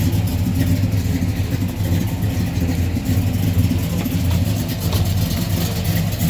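Car engine running steadily at low revs, a deep even drone with no revving.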